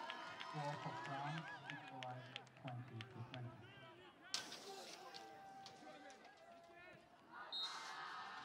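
Faint, distant voices calling and talking out on an open sports pitch, with a single sharp knock about four seconds in.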